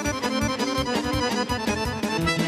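Live folk band playing an instrumental passage on accordion and electronic keyboards over a quick, steady beat of about four strokes a second.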